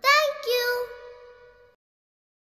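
A child's voice saying a sing-song two-syllable "thank you", the second syllable held on a steady pitch for over a second, then cut off shortly before the end.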